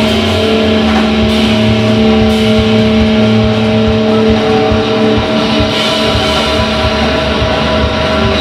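Live indie rock band playing a loud instrumental passage: electric guitars hold long sustained notes over bass and drums.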